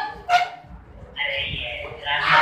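A single short bark-like yelp about a third of a second in, followed by a brief hissing noise.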